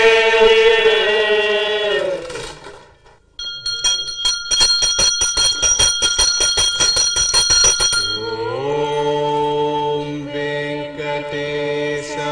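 A long chanted note is held and fades out about two seconds in. After a short pause a temple hand bell rings fast and evenly, about six strokes a second, for some four seconds. Then chanting resumes on a steady held note.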